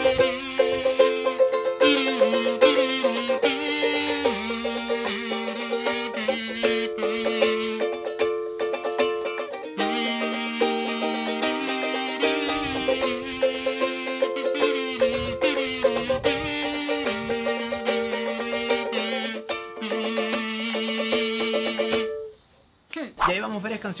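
A kazoo buzzing a hummed melody over a strummed ukulele, both played at once by one player. The music stops about two seconds before the end, leaving a brief gap.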